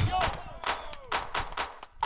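Music breaks off, then about five sharp bangs sound at uneven intervals, each dying away quickly.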